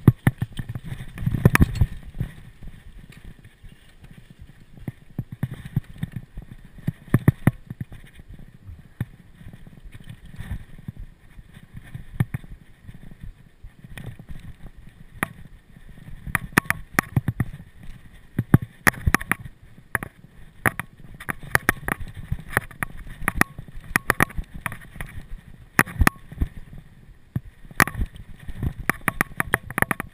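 Mountain bike riding down a rough dirt trail: the bike clatters and rattles with frequent sharp knocks, coming thicker from about halfway on, over a low rumble of wind buffeting the microphone.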